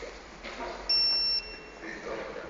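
Optical fiber fusion splicer giving one short, steady, high-pitched beep lasting about half a second, about a second in.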